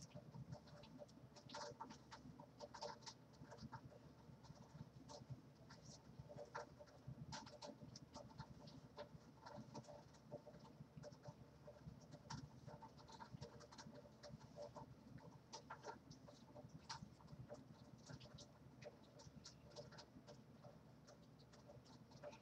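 Very faint, irregular rustling and crackling of hair being handled as bantu knots are untwisted and pulled apart by hand.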